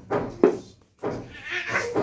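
Children laughing in short breathy bursts, with a sharp knock about half a second in.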